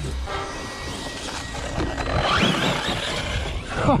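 Brushless electric motor of a Team Corally Kronos XTR 6S RC buggy whining under throttle as the truck drives away over grass. The pitch rises and falls in quick surges about two seconds in.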